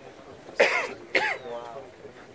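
A person close to the microphone coughs twice, about half a second apart, then makes a short, fainter voiced sound.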